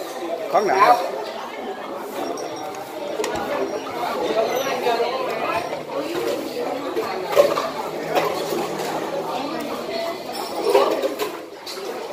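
Several people talking at once around a restaurant table, with a few clinks of dishes and cutlery.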